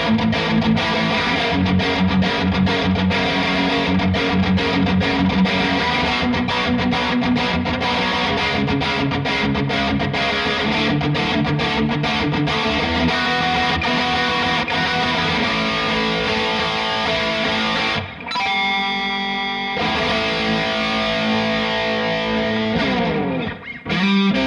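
Epiphone 1966 G-400 Pro electric guitar played with a distorted tone, continuous riffs and lead lines. The playing briefly thins out about eighteen seconds in, then carries on.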